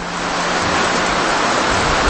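A loud, even hiss with a steady low hum underneath, swelling gradually in a pause between words and cutting off when the voice returns.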